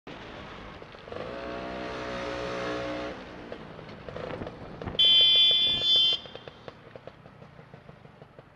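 Motor scooter running through traffic, its engine note swelling steadily for about two seconds. About five seconds in, a loud, high-pitched vehicle horn sounds for just over a second, the loudest sound.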